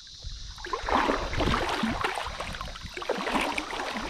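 Shallow creek water splashing and sloshing. It starts about a second in as irregular short splashes that continue.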